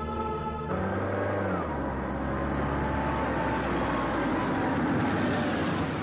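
Film soundtrack: a held chord of background music ends under a second in, giving way to a dense, swelling rumble with some faint sliding tones that grows steadily louder toward the end, a transition sound under the scene change.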